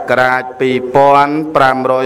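A Buddhist monk's voice chanting in slow, melodic recitation, each syllable held long on a steady pitch with short breaks between phrases.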